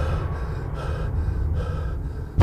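Film soundtrack: a person taking about three short gasping breaths over a low steady rumble.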